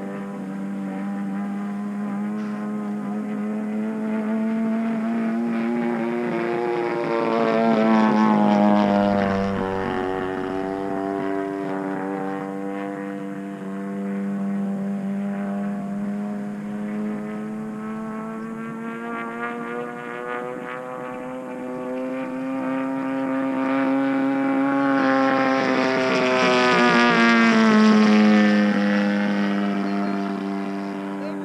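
Piston engine of a 116-inch Skywing NG radio-control aerobatic airplane running in flight, a steady drone. It grows louder and drops in pitch as the plane passes close, about eight seconds in and again near the end.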